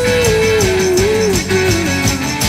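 Live pop-punk band playing: electric guitar, bass and drums, with a prominent melody line that steps down in pitch across the two seconds.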